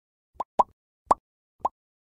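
Four short pop sound effects in quick succession, each a quick rising blip, from an animated subscribe-button graphic.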